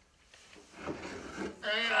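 Soft rummaging and scraping as a dartboard is pulled out from under a table past a cloth curtain, then a man's voice near the end.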